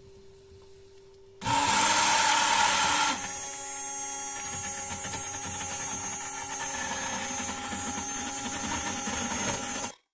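Handheld immersion blender switched on about a second and a half in, its small electric motor whining steadily as the blade purées a pot of cooked fava (yellow split peas). It is loudest for the first second and a half, then settles about ten decibels lower and runs steadily until it stops abruptly at the end.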